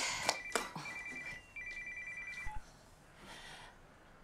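Telephone ringing with a fast electronic trill in three short bursts, stopping about two and a half seconds in when it is picked up.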